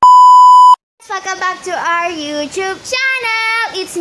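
A steady 1 kHz test-pattern tone, the bleep that goes with TV colour bars, sounds for under a second and cuts off sharply. After a brief silence, young girls' voices start talking in a sing-song way.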